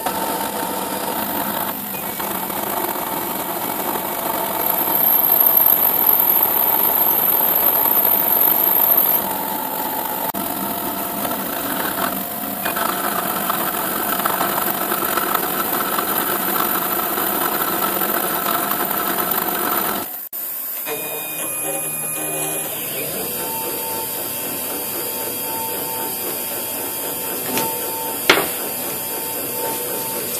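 A milling machine's spindle runs steadily while a 5 mm slot drill cuts a through-slot in a clamped metal mould plate, making a continuous machining whine with a few held tones. The sound changes suddenly about two-thirds of the way in to a steadier, thinner tone.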